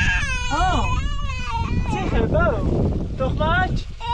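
A toddler crying, a series of wailing cries that rise and fall in pitch.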